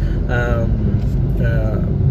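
A man speaking in two short phrases over the steady low rumble of a moving car, heard from inside the cabin.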